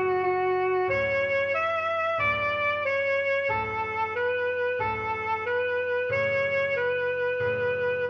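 Alto saxophone melody played back from the score, a string of held notes changing pitch about every half second, over a backing track with low chords that restart every second or so.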